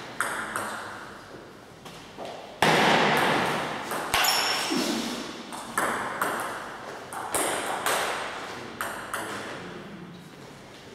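A table tennis ball knocking off bats and the table in a string of sharp, irregularly spaced clicks, each ringing on in the hall's echo.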